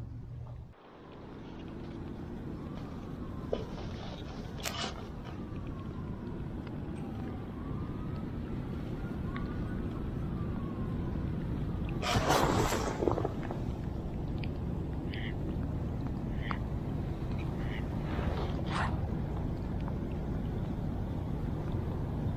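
Steady low rumble of wind and rain on a body-worn microphone, with a louder rustle of a rain jacket a little past halfway and a few faint short ticks and tones.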